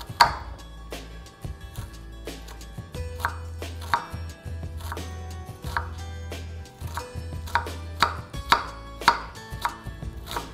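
Kitchen knife chopping a red onion on a wooden cutting board: sharp knocks of the blade meeting the board at an uneven pace, about one a second and closer together near the end.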